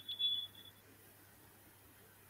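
A short, high-pitched electronic beep lasting about half a second at the very start, followed by faint room tone.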